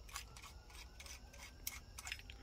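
A few faint clicks and light rubbing of small metal parts as a carburetor's throttle slide is handled and worked out of its body by hand.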